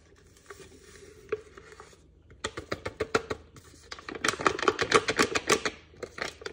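A shake-mix packet crinkling, with rapid crackles and taps as the powder is shaken out into a NutriBullet blender cup. It starts quietly, then builds to a dense run of sharp crackles from about halfway through, loudest near the end.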